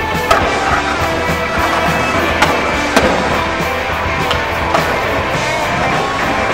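Skateboard sounds over a music soundtrack: sharp clacks of the board hitting concrete and roofing, the loudest about a third of a second in, with more around two and a half and three seconds in.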